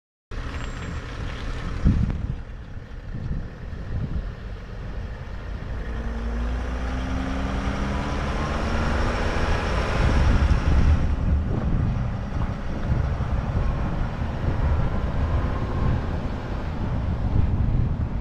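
A van's engine running as it drives past, its pitch rising as it speeds up and loudest about ten seconds in. A thump about two seconds in.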